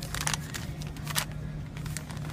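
A steady low hum with a few brief clicks and rustles, like a handheld phone being handled.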